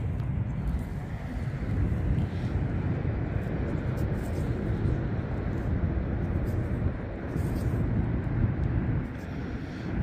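A steady low rumble of outdoor background noise.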